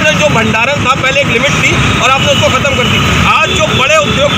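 A man speaking in Hindi into press microphones, with a steady low rumble of background noise under his voice.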